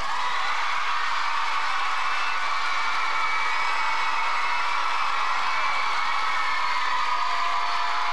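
Audience applauding and cheering right after a song ends, with high-pitched held cheers over the clapping, at a steady level throughout.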